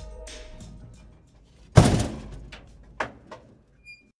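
Background music fading out, then a produced intro sting: one heavy impact hit with a long fading tail a little under two seconds in, two smaller hits about a second later, and a short high ding at the end.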